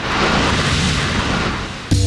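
A drum and bass track's build-up: a long rushing, rumbling noise effect, then near the end a sharp beat and a deep bass come in.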